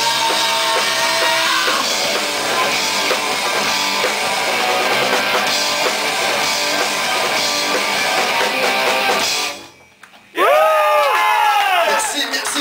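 Live rock band playing loudly, with two Les Paul-style electric guitars and a drum kit. The music stops suddenly about nine and a half seconds in, and after a brief pause a loud pitched sound bends up and back down.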